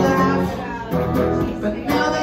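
A hollow-body electric guitar strummed and picked in a live song, the chords changing every half second or so.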